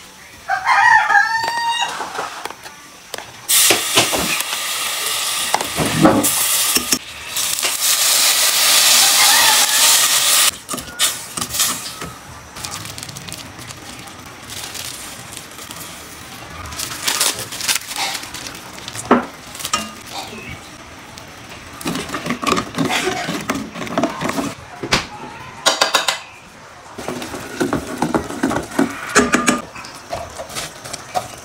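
A rooster crows about a second in. This is followed by cooking sounds at a steel pot on a gas burner: a long steady hiss for about seven seconds as liquid goes onto sugar in the hot pot, then scattered clicks, knocks and scrapes of a knife and spoon on the pot while the sugar syrup bubbles.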